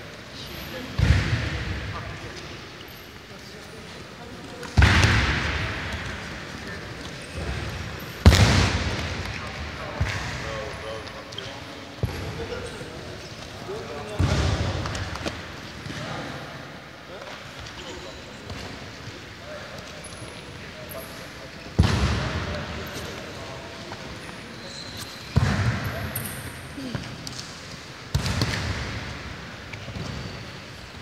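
Heavy thuds of wrestlers' bodies hitting the training mats, about seven in all, each a sudden slam that echoes round a large hall. Voices murmur throughout.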